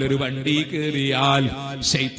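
A man's voice chanting in a melodic, drawn-out tone, with held notes that waver and glide in pitch, over a public-address system.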